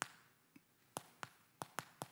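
Chalk tapping against a blackboard while writing: about five faint, sharp, irregular clicks as the stick strikes the board.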